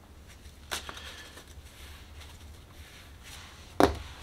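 A tarot card being drawn and laid down on the table: a faint tap about three-quarters of a second in, then a sharp slap as the card is set down near the end, over a low steady hum.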